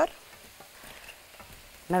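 Faint, steady sizzling of hot oil as batter-coated potato fries deep-fry in a pan.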